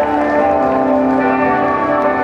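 Live rock band playing an instrumental passage of sustained, ringing notes, without singing.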